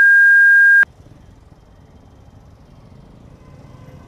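A loud, steady high-pitched beep, a censor bleep edited over the speech, cutting off abruptly just under a second in. After it, only the faint low rumble of a motorcycle's engine and road noise in slow city traffic.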